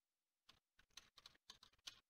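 Faint computer keyboard typing: a quick run of about a dozen keystrokes starting about half a second in.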